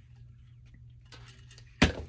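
Quiet room with a steady low hum and a few faint small ticks, then a single sharp click near the end.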